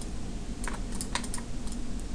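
About half a dozen light, irregular clicks of computer mouse buttons as the view of a CAD model is turned, over a faint steady low hum.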